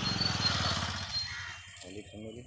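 A small motor vehicle's engine passing close by, loudest about half a second in and fading away over the second half.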